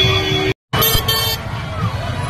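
Busy street din from a festival crowd and traffic, a steady low rumble, broken by a complete dropout about half a second in. Right after the gap comes a short, shrill toot lasting about half a second, like a vehicle horn.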